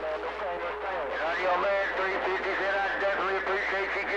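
A distant station's voice received over a CB radio speaker, talking continuously through a haze of static, too noisy for the words to be made out.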